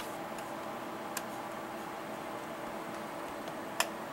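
Three short, sharp computer-mouse clicks spread over a few seconds, over a steady faint hum and hiss of room tone.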